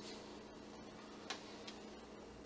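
Faint clicks of a plate being slid off a refrigerator shelf, one a little louder about two-thirds of the way in, over a low steady hum.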